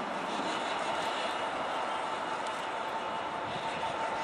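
Class 66 diesel-electric locomotive (EMD two-stroke V12) running steadily as it hauls a loaded scrap train of box wagons along the track, a steady drone with a faint steady whine over it.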